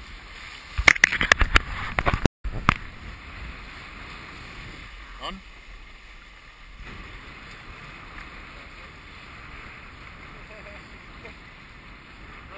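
Water rushing past a sailing Hobie catamaran with wind on the microphone, a steady hiss. About a second in comes a quick run of sharp knocks and slaps lasting a couple of seconds.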